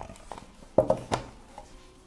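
Two sharp clicks from tableware being handled on a table, the first the louder, with a few faint ticks between them.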